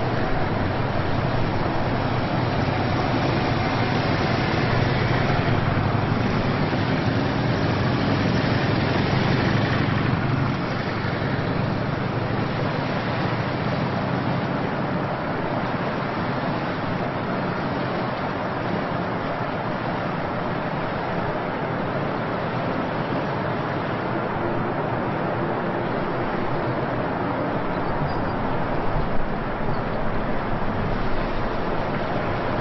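A column of police motorcycles riding slowly past in formation, their engines running together as a steady, dense engine noise, somewhat louder in the first ten seconds.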